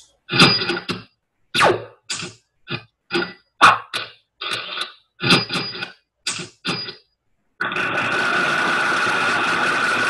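A quick run of about a dozen short slide-animation sound effects, each under half a second. Each effect marks one step in building a sentence's structure: joining words into phrases, adding features, checking, moving a phrase. Near the end comes one steady, noisy sound effect lasting about three seconds.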